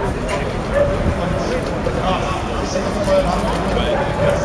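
Outdoor street ambience: indistinct voices talking over a steady background noise.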